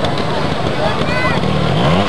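A trials motorcycle's single-cylinder engine runs at low revs, then revs up quickly near the end as the rider lifts the front wheel onto a rock step.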